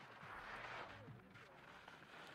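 Near silence: a faint, even background hiss.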